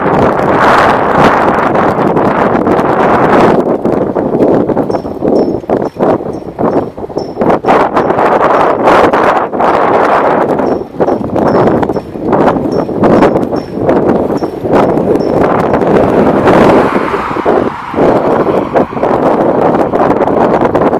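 Wind buffeting the microphone while moving along a road, with many irregular knocks and rattles and a faint regular high ticking, a few times a second, in stretches.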